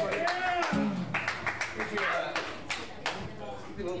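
Indistinct voices of a bar audience between songs, with a few scattered hand claps or knocks in the middle.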